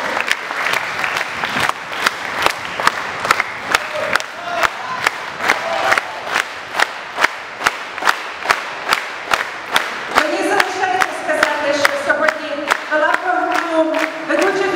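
Audience applauding, then clapping together in a steady rhythm, about two and a half claps a second. Near the end a melody returns over the clapping.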